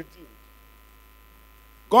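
Faint, steady electrical hum with a few thin constant tones, heard through the microphone in a pause between a man's spoken phrases; his voice cuts off just after the start and comes back just before the end.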